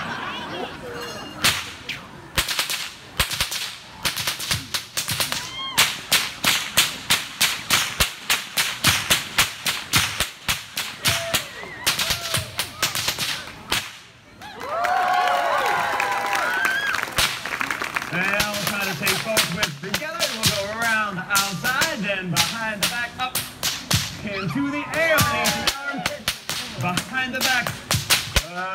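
A whip cracked over and over, several sharp cracks a second, for about twelve seconds. After a short break the cracks carry on more sparsely, mixed with voices or pitched sound.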